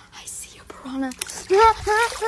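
Voice only: a soft, whispery 'oh', then a high-pitched voice in short rising-and-falling syllables, about three a second, from about a second and a half in.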